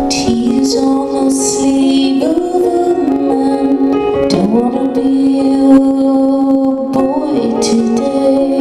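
A woman singing live while playing a Bösendorfer grand piano. Her voice holds long notes and slides between pitches over sustained piano chords.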